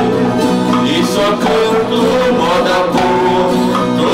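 Brazilian música caipira: a ten-string viola caipira and a second acoustic guitar played with two male voices singing together.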